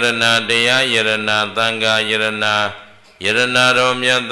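A Buddhist monk chanting into a microphone in a steady, low monotone, holding long level-pitched phrases, with a short pause for breath near three seconds in.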